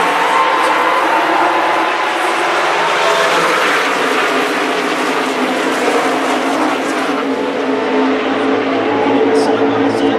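Pack of NASCAR Cup Series stock cars racing past at full speed, their V8 engines blending into one loud, continuous drone, with voices from the crowd mixed in.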